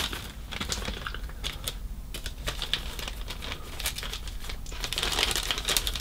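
Plastic model-kit sprues clicking and rattling against each other as they are handled, with some crinkling of plastic bags and packing sheet, in irregular taps that get busier near the end.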